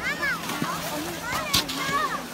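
Background crowd of children calling and chattering, with high rising-and-falling calls, over a general crowd hubbub. A short sharp knock about one and a half seconds in.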